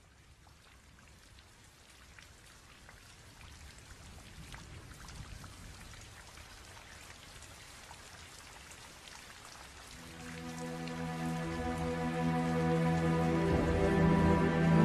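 Recorded rain fading in and growing steadily louder, with scattered individual drop ticks. About ten seconds in, sustained chords of a slow instrumental piece fade in and swell over the rain.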